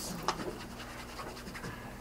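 Faint room noise of a live talk recorded with a room full of people: a low, even hiss with a few soft clicks.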